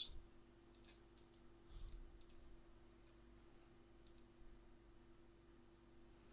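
Near silence with a few faint computer mouse clicks over a low steady hum.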